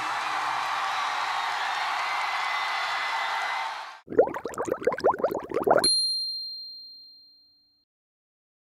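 Steady crowd noise from the audience at the end of the stage, cut off about four seconds in. A short outro sting follows: a rapid run of swooping tones, then one bright ding that rings out and fades away.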